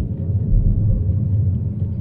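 Steady low rumble of tyres rolling on a snow-covered road, heard inside the cabin of a Tesla Model 3, an electric car with no engine sound.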